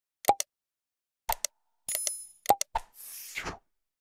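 Stock sound effects of an animated subscribe-button end screen. A pop is followed by a quick double mouse click and a short bright bell ding. Another pop and click come next, and a whoosh swells and fades near the end.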